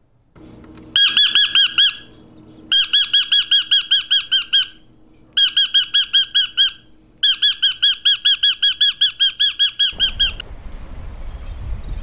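A parrot calling in four bursts of rapid, evenly repeated, high chirping notes, about six a second, with short pauses between the bursts. Near the end the calls stop and water splashing takes over.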